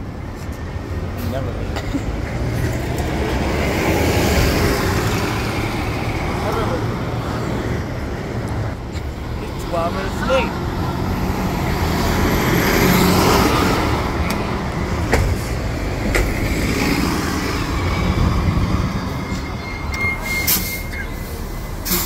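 City transit buses and street traffic: bus engines running at a curbside stop, with a bus driving past at its loudest about twelve to thirteen seconds in.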